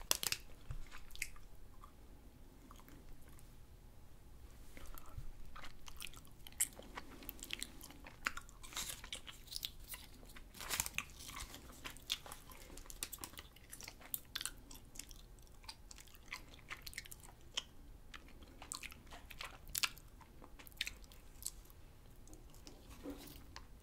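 Close-miked mouth sounds of a person eating a chewy fruit jelly candy: wet chewing and biting with many sharp, irregular clicks and lip smacks.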